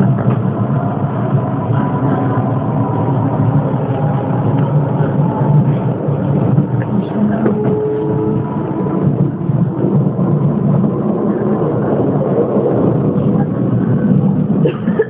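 Running noise of a train heard from inside the carriage: a steady rumble with a faint whine over it.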